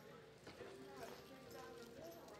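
Faint hoofbeats of a horse loping on soft arena dirt, under faint distant voices.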